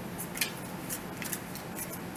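A deck of tarot cards being shuffled by hand: a few short, crisp snaps as the cards slip and strike against each other.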